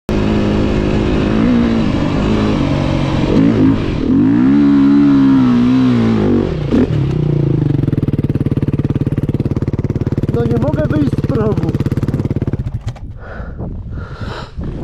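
Dirt bike engine revving hard on a sand hill climb, rising and falling, then held at high revs with a rapid pulsing as the bike bogs down in the sand; the engine cuts out about a second before the end. The rider blames the failed climb on too little power in the gear he chose.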